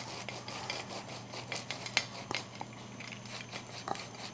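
Faint handling sounds of hands laying basil leaves on crusty grilled baguette slices on a plate: scattered small clicks and light crackles.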